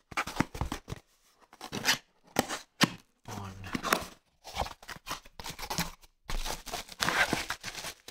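Small cardboard box being opened by hand: the flaps and lid scrape and rustle in irregular bursts, with a few sharp clicks, as a bubble-wrapped lamp is slid out.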